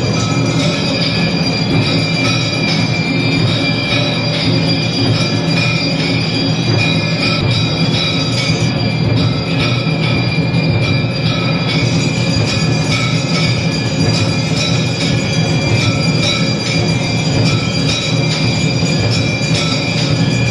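Temple bells and gongs clanging continuously for the aarti, a dense metallic ringing with sustained high tones and a steady run of strikes.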